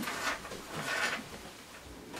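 Soft rustling and handling noise as a quilt top is moved about, with two or three gentle swishes that fade toward the end.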